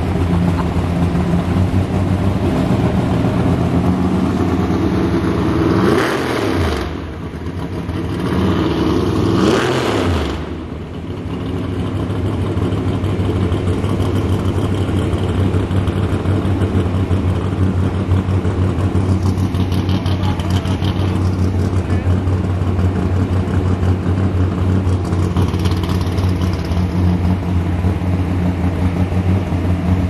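Car engine running at a steady idle, blipped twice about six and nine seconds in, each rev falling back to idle.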